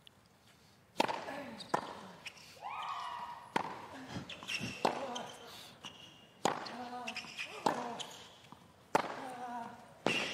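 Tennis rally on a hard court: a ball struck back and forth by racquets, a sharp pop about every second and a half starting about a second in, with players' short grunts on the shots and softer ball bounces between.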